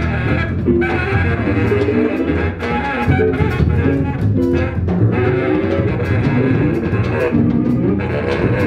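Live jazz-leaning quartet playing: tenor-range saxophone over electric guitar, upright double bass and a drum kit with frequent cymbal and drum hits.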